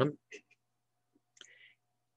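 A man's reading voice finishing a word, then in the pause two faint mouth clicks and, about a second and a half in, a short soft breath.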